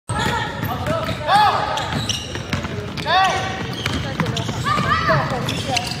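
Youth basketball in play on a hardwood gym court: a ball bouncing, with short high squeaks about three times, one roughly every two seconds, amid players' and onlookers' voices in a large, echoing hall.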